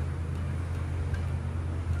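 A steady low hum with a few faint ticks.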